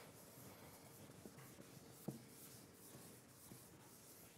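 Faint rubbing of an eraser wiping a chalkboard, with a light knock about two seconds in.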